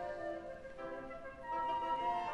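Orchestra playing classical music, strings with a flute line; a high held note comes in about one and a half seconds in as the music grows louder.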